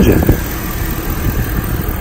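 The 5.3-liter Vortec V8 of a 2003 Chevrolet Tahoe Z71 idling steadily, heard up close from the open engine bay; the seller says it runs good.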